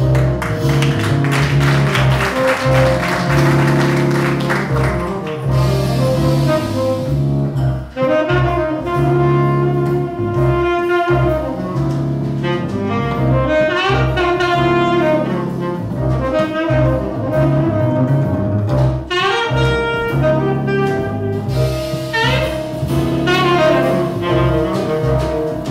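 A jazz quartet playing an instrumental passage, with the saxophone carrying the melody over double bass and drum kit.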